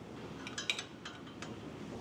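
A few light clicks and clinks as a BCMaster digital angle gauge and its metal bar are handled and set on a reel mower cutting unit while the gauge is zeroed, over faint room hiss.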